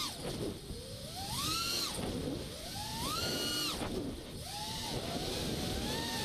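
Miniquad's brushless motors and propellers whining, the pitch surging up steeply with each hard throttle pop and falling away as the throttle is cut, about three times, over a steady rush of air.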